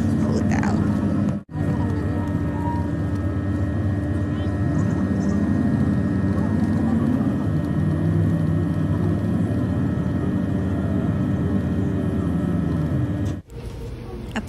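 Steady engine and road hum heard from inside a moving bus, broken by a brief dropout about one and a half seconds in.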